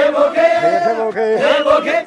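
Group of men's voices chanting together in an Oromo song.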